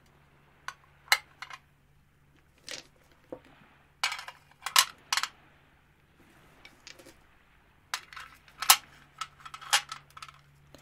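Sharp metallic clinks and taps from an ornate metal bowl and small gems being handled and set down on a table, coming in irregular clusters about a second in, around four to five seconds, and near the end, where the loudest clink falls.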